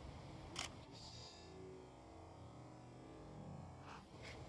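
Two sharp camera-shutter clicks in a quiet background, one about half a second in and another near the end.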